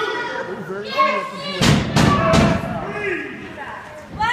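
Voices in the crowd around a wrestling ring, with a short loud stretch of several thuds and slams on the ring canvas about halfway through, during a pinfall count and the kick-out that breaks it.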